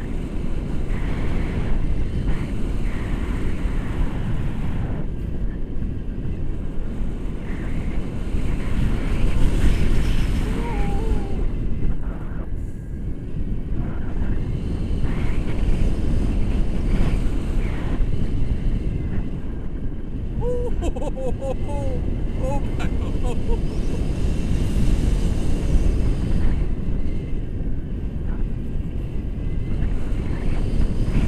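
Airflow of a tandem paraglider in flight buffeting an action camera's microphone: a steady, loud rush of wind noise.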